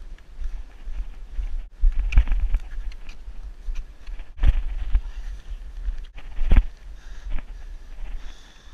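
Wind buffeting the microphone as a low, gusty rumble, with crunching snowshoe steps in snow; the heaviest steps come about two, four and a half and six and a half seconds in.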